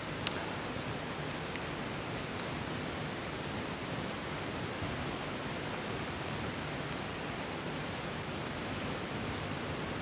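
A steady, even hiss with no speech, and one faint click just after the start.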